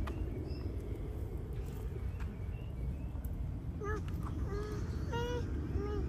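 Open-air background with a steady low rumble and no clear event. Near the end, quiet voices speak briefly.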